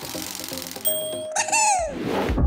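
Cartoon-style sound effects over background music: a bright bell-like ding a little under a second in, then a quick falling-pitch glide.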